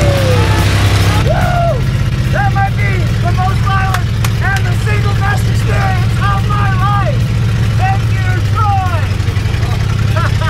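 A demolition-derby truck's engine running steadily, heard from inside the stripped cab. A man shouts in a high, excited voice over it from about a second in, with a few sharp knocks or rattles near the middle.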